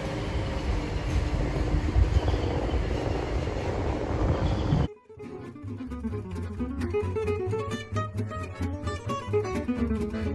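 A TGV train running past along the platform, a steady noise of wheels on rail. About halfway through it cuts off abruptly and acoustic guitar music takes over.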